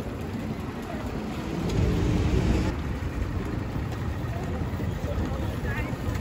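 Busy city street: steady traffic noise with a vehicle passing and swelling briefly about two seconds in, and passersby voices now and then.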